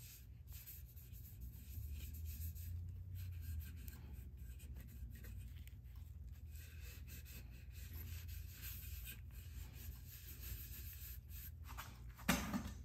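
Cloth rag rubbing over the repaired wooden tote (rear handle) of a hand plane, wiping the horn: faint, irregular scratchy swishes over a steady low hum.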